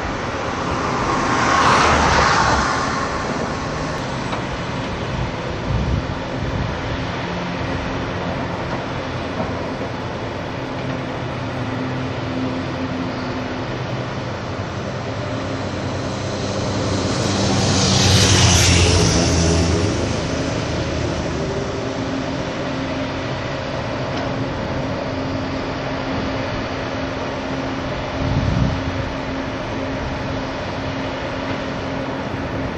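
Steady outdoor traffic rumble, with two vehicles passing close by, each swelling and fading, about two seconds in and again, louder, around eighteen seconds. A short low thump comes near the end.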